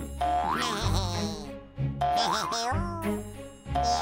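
Bouncy children's cartoon music with springy, wobbling boing sound effects, a short phrase repeating about every two seconds.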